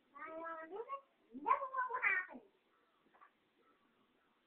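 Domestic cat meowing twice: a first drawn-out meow, then a second with a bending pitch starting about halfway through.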